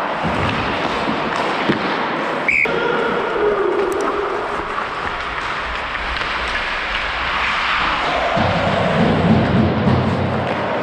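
Ice hockey play: a steady scrape and hiss of skates on ice, with one sharp crack of a stick or puck about two and a half seconds in and heavier thuds near the end, over music.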